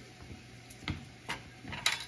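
Kitchen utensils being handled on a plastic cutting board: three light knocks and clicks, spread about half a second apart.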